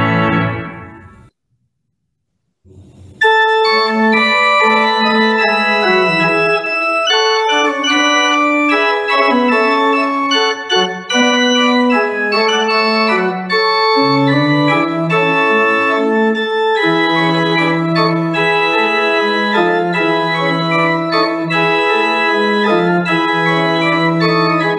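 Pipe organ playing. A phrase ends and dies away in the first second, there is a brief silence, and about three seconds in the organ starts again with full sustained chords over a moving bass line.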